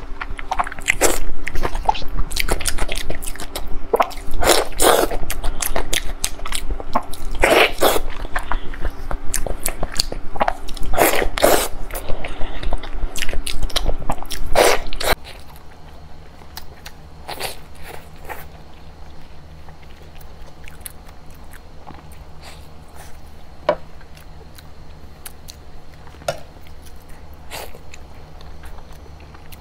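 Close-miked eating sounds: loud, wet, sticky tearing and biting as glazed food is pulled apart by hand and eaten. About halfway through the sound drops to much quieter chewing with a few scattered clicks.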